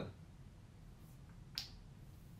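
Quiet room tone with a faint low hum, broken once about one and a half seconds in by a single short, sharp click.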